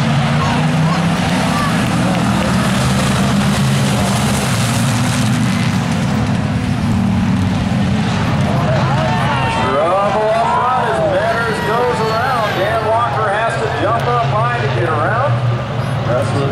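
A pack of hobby stock race cars running together around the oval, a steady engine drone. Over the second half, voices rise above the engines.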